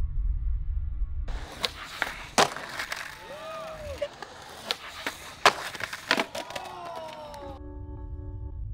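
Skateboard wheels rolling on concrete, then a run of sharp cracks and clatters from the board popping and slapping down as tries at a backside heelflip end in bails, with onlookers calling out. Music plays underneath and is all that is left near the end.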